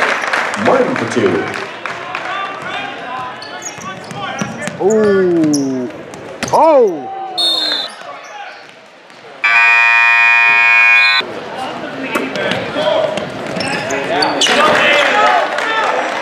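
Gym scoreboard buzzer sounding loud and steady for about two seconds as the game clock runs out, ending the period. Around it, basketballs bounce and players and spectators shout.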